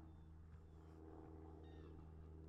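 Near silence: a faint steady low hum, with a brief faint high call near the end.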